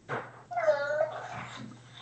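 A short whine-like vocal sound, about half a second long and falling slightly in pitch.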